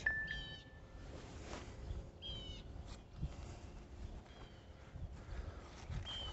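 Bird calling outdoors: short phrases of quick, falling high notes repeated about every two seconds, with a brief steady whistle near the start, over faint background noise.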